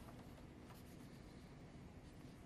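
Near silence: room tone with a couple of faint clicks.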